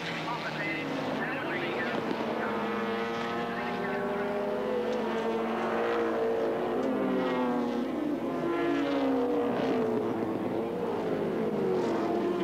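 Racing touring car engines running hard through a set of bends: several engine notes overlapping, each rising and falling in pitch as the cars brake and accelerate.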